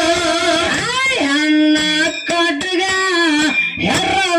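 Kannada dollina pada folk song: an amplified singer's voice holds long notes that slide and waver between pitches, over regular drum strokes.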